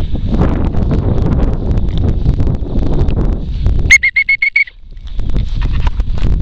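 Wind buffeting the microphone, then about four seconds in a short trilled whistle blast of about seven quick pulses at one pitch, lasting under a second: a pea-type training whistle.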